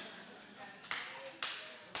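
Three sharp hand claps, about half a second apart.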